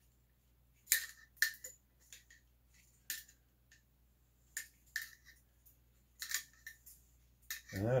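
Light metallic clicks and clinks, about a dozen at irregular intervals, from an AR-style rifle and its cleaning gear being handled during chamber cleaning.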